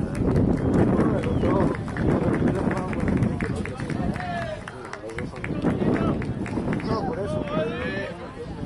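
Spectators talking in the stands, several voices overlapping and indistinct, with scattered small clicks.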